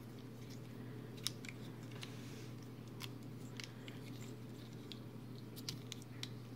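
Scattered small clicks and taps of a plastic Transformers Earthrise Pounce figure's joints and parts as it is turned and transformed by hand, over a faint steady hum.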